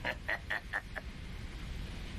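A person laughing in short rhythmic pulses, about four a second, stopping about a second in.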